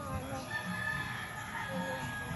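A rooster crowing: one long, held crow that begins about half a second in.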